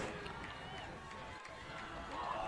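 Faint stadium crowd and field ambience, with distant wavering shouted voices.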